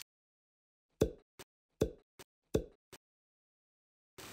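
Three plopping sound effects about three-quarters of a second apart, each followed by a small click.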